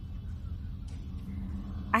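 Steady low rumble of a car cabin, with a few faint ticks, before a voice begins at the very end.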